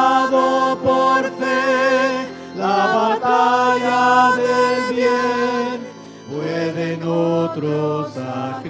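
A hymn sung by a woman's voice with vibrato in long held notes, over keyboard accompaniment, with a short break between phrases about six seconds in.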